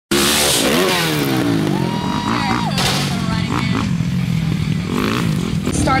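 Motocross dirt bike engine revving up and down repeatedly, its pitch rising and falling with each twist of the throttle.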